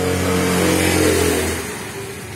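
A steady engine hum with a low droning note that fades away about a second and a half in.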